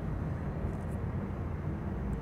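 Steady low rumble of a paint spray booth's ventilation fans, even throughout with no starts or stops.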